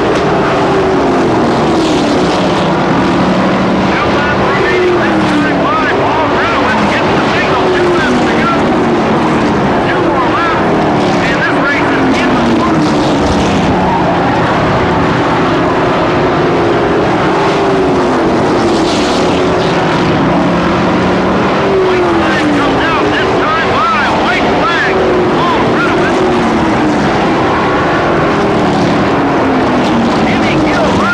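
A pack of short-track pro race trucks running flat out around an oval, their engine notes loud and continuous, falling in pitch again and again every couple of seconds as trucks go by and lap.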